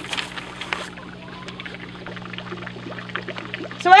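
Water trickling steadily into an outdoor pond tank over a constant low hum, with a brief rustle in the first second.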